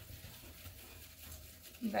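Wire whisk stirring softly through a thick herb, butter and olive-oil mixture in a glass bowl, faint over a low steady hum.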